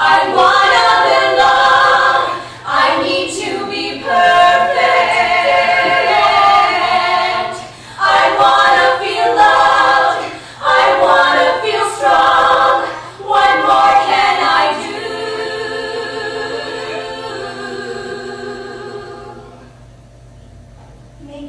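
Three women singing together in harmony: several sung phrases broken by short breaths, then one long held chord from about fifteen seconds in that slowly fades away.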